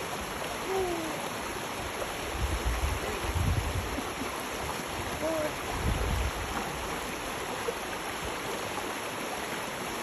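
Shallow rocky creek flowing, a steady rush of water, with two spells of louder low noise about two and a half and five and a half seconds in, as a man wades through it.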